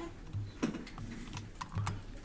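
Typing on a computer keyboard: a handful of irregular keystrokes while Java code is being entered in an editor.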